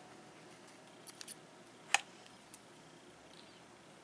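Scissors snipping off the thread end after knotting: a few faint ticks a second in, then one sharp snip about two seconds in, and a small tick after it.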